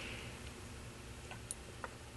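A drink sipped from a lidded takeaway cup: a few faint small clicks of the cup and swallowing over quiet room hum, the clicks coming in the second half.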